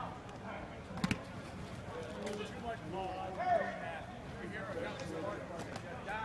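Indistinct voices of players and coaches across a large indoor football practice facility, with a sharp double smack about a second in.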